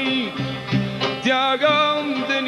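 Kurdish folk music from a live ensemble: santur and violins playing a melody with slides and vibrato, with a male singer.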